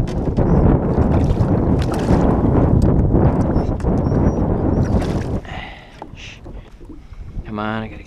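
Wind buffeting the microphone: a loud low rumble, broken by small splashes and knocks as a bass is handled in the water beside the boat. The rumble drops away about five seconds in.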